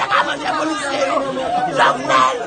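An elderly woman crying and wailing in grief, with several voices talking over one another.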